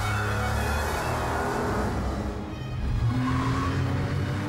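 Porsche 996 Carrera 4S's flat-six engine as the car drives past, with a rush of passing noise in the first two seconds and a rising engine note about three seconds in, over background music.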